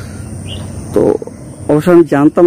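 Low rumble of wind on the microphone. A man says a short word in Bengali about a second in and starts talking again near the end.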